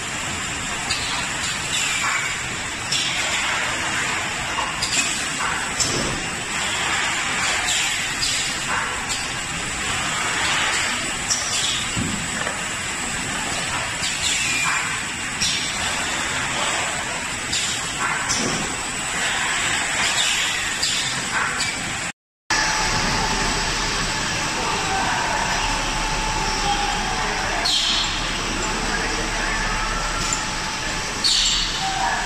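Automatic case packer running: a pneumatic gripper head lifting 5-litre oil bottles into cartons, over a steady machine din with repeated short hisses of air and clacks. After a brief cut about two-thirds of the way through, a steadier hum with a faint whine follows, from the spiral conveyor that carries the cartons.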